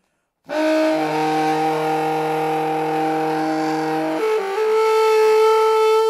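Alto saxophone coming in after a brief silence with a loud, sustained multiphonic, several pitches sounding at once, then shifting to a higher held tone about four seconds in.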